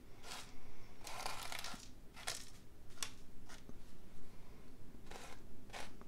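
Dried salt crystals being rubbed off watercolor paper with a paper towel: a series of short, irregular scratchy rubbing strokes, one longer one about a second in.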